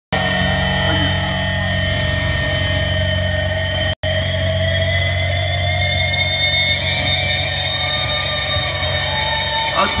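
Live metal band's amplified guitars and bass holding a sustained, droning wash with steady ringing feedback tones. The band plays no distinct song rhythm before the next song is introduced. The sound drops out for an instant about four seconds in.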